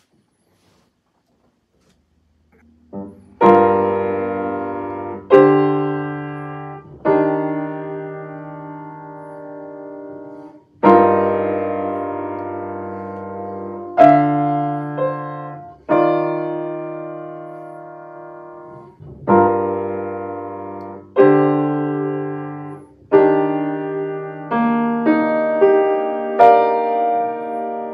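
Upright piano played slowly by a learner: after about three seconds of silence, sustained chords are struck roughly every two seconds, each left to ring and fade, with the notes coming a little quicker near the end.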